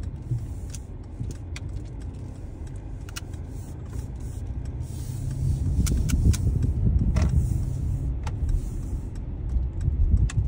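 Low rumble of a car on the move, heard from inside the cabin, with scattered light clicks and rattles; it grows louder about halfway through.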